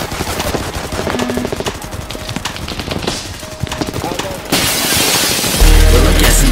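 Rapid machine-gun fire and shots in a mixed sound-effect sample, with bits of voice and music under it. About four and a half seconds in, a loud rush of noise takes over, and near the end a heavy bass beat drops in as the next track starts.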